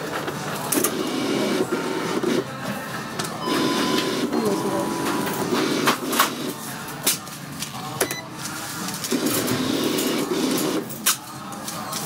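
Sounds of a store checkout: a machine whirring in three short buzzing spells, amid clicks and knocks of items being handled, with a faint beep about four seconds in.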